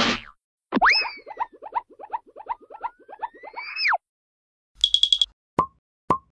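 Added cartoon sound effects: a string of quick pops, about five a second, under a whistle that jumps up, slides down and slides back up, then a short burst of rapid high beeps and a single blip near the end.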